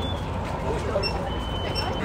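Outdoor background noise: a steady low hum with a thin, high-pitched steady tone that sounds briefly at the start and again near the end, under faint voices.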